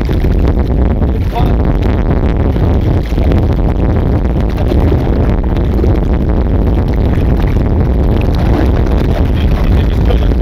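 Steady, loud rumble of wind on the microphone over water moving against the side of a boat, with faint voices in the background.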